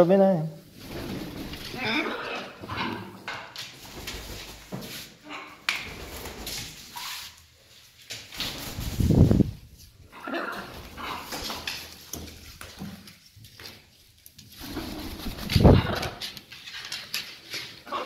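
Parrots making assorted mumbling, whining calls, with two louder low calls about nine seconds in and near the end.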